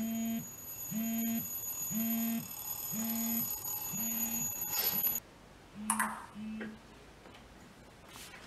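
Mobile phone sounding a repeated electronic beep tone, about one half-second beep a second. A brief rustle comes near the middle, two more beeps follow, and the beeping stops.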